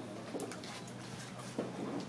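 A bird cooing twice, over steady low background noise.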